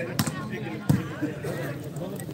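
A volleyball being struck in play: two sharp smacks about three-quarters of a second apart, over background crowd chatter.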